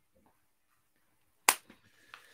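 A silent pause broken about one and a half seconds in by a single sharp smack, followed at once by a fainter tap.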